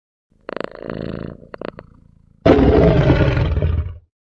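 Intro sound effect: a short fluttering buzz and two quick clicks, then a loud roar from about halfway through that fades and stops at the end.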